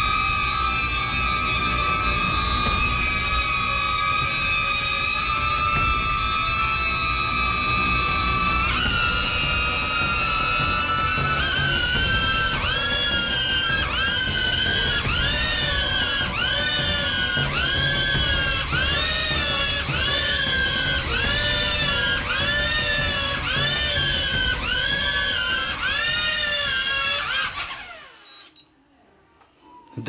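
DJI Neo mini drone's propellers whining in a strained hover under about 60 g of payload, making a lot of noise. About nine seconds in the pitch steps up, then swells and falls back roughly once a second as the overloaded motors fight to hold height. The whine cuts out near the end as the drone sets down.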